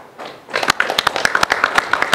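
Applause from a small group of people in the room: a dense patter of hand claps that breaks out about half a second in and keeps going.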